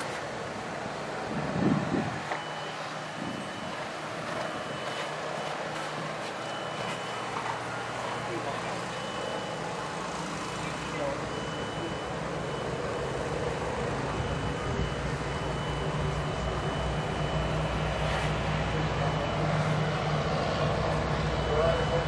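Outdoor background noise with a low rumble that grows louder over the second half, a faint high beep repeating on and off, and faint voices.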